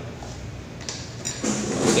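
Handling noise from a stand electric fan: a faint low hum, then a scraping knock in the last half second as the fan is moved by hand.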